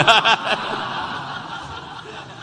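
Audience laughter from a lecture congregation, loudest at the start and dying away over the two seconds.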